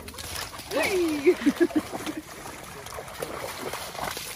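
Vizsla dogs splashing through shallow river water as they wade and swim. About a second in, a voice briefly calls out over the splashing, falling in pitch and breaking into a few short sounds.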